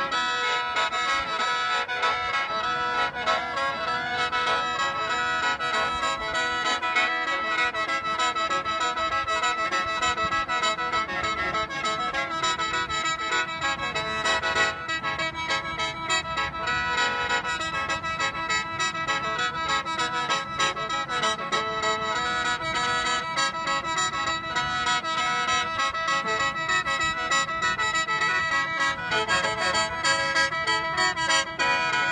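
Lao khaen, a bamboo free-reed mouth organ, played solo in lai sootsanaen (sutsanaen mode): a melody of several reeds sounding together over a steady drone, continuous without a break.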